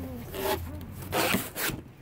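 Plastic bags and cardboard rustling and scraping as they are handled, in several short bursts.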